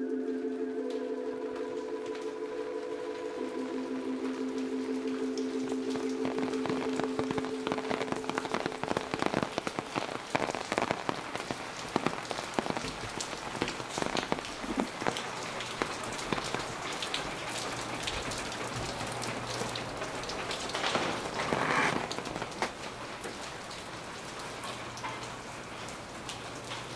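Rain falling and dripping onto wet pavement and surfaces, a dense patter of separate drops, with a louder spell of drops near the end. Over the first several seconds, sustained droning music tones hold and then fade out under the rain.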